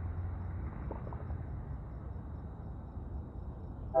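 Low, steady rumble of a distant diesel locomotive approaching on light power.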